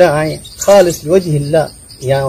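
A man speaking in Rohingya, with a steady high-pitched whine running underneath.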